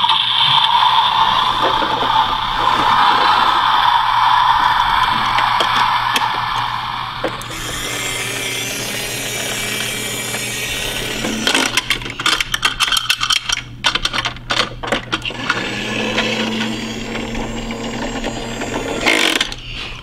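Toy garbage truck's electronic sound effect, a steady machine-like noise lasting about seven seconds after its roof button is pressed. Later comes a run of rapid plastic clicking and rattling as the side-loader arm and bin are worked by hand, then another steady sound effect near the end.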